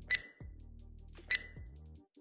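A quiet break in electronic background music, with two short high beeps a little over a second apart. The beeps are a workout interval timer marking the end of a timed drill.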